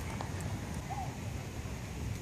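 Steady low wind rumble on the microphone outdoors, with a few faint light clicks early on and a brief arched chirp about a second in.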